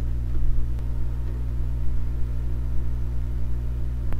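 Steady low electrical mains hum with its overtones, picked up on the recording's microphone line.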